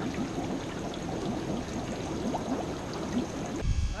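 Water trickling and splashing steadily in a fish-farm holding vat, with many small bubbling blips. Near the end it cuts off sharply to a low wind rumble on the microphone.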